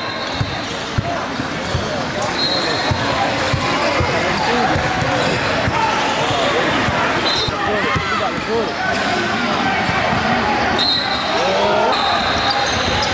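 Live sound of a basketball game in a gym: a ball bouncing on the hardwood court under general crowd chatter.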